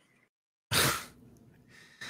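A person's sudden, noisy burst of breath close to the microphone, starting about two-thirds of a second in and fading within half a second.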